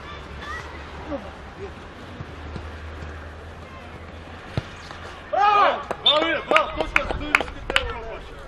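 Players shouting loudly on a small-sided football pitch, starting about five seconds in. Through the shouting come several sharp thuds of the ball being kicked.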